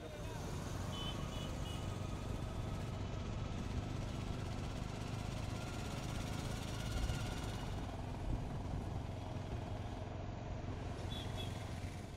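Steady street traffic: auto-rickshaw and motorcycle engines running on a road, with brief faint high tones about a second in and again near the end.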